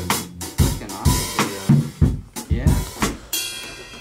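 Drum kit being played: kick drum and snare hits with cymbals, the hits coming every half second or so.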